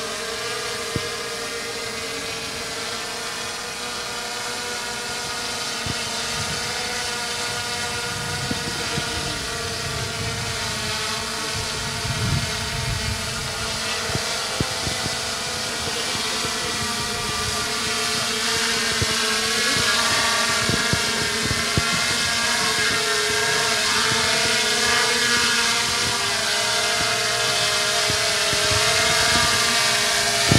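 Multirotor drone flying overhead: its propellers give a steady whine in several tones that waver slightly in pitch, growing gradually louder as it comes nearer.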